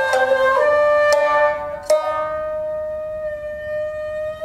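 Shamisen and shakuhachi playing together in jiuta style: crisp shamisen plucks about a second in and again just before two seconds, then the shakuhachi holds one long steady note.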